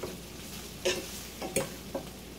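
Garlic cloves sizzling in hot oil in a skillet as the oil is infused with garlic, with a few short clicks of stirring about a second in and again a little later.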